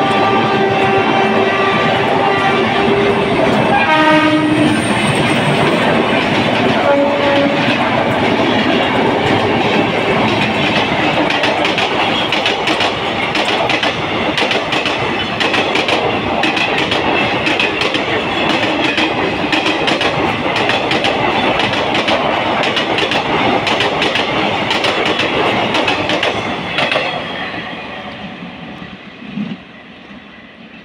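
Indian Railways passenger trains passing at speed. A locomotive horn sounds for the first few seconds, with another short blast about four seconds in. Then comes the steady rumble and rapid clickety-clack of coach wheels over rail joints, which fades away near the end.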